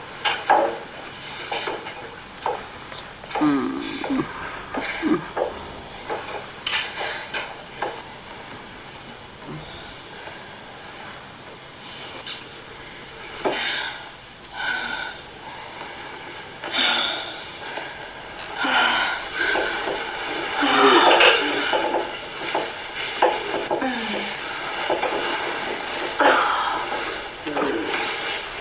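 Intermittent voices with clinks and knocks of crockery and cutlery in a kitchen.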